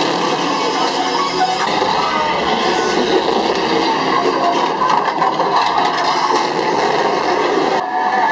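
Loud haunted-house maze soundtrack: a dense, steady mix of music and sound effects that fills the passage without a break.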